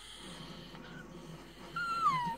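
A small dog vocalizing in low, wavering moans and grumbles, then a short high whine that falls in pitch near the end.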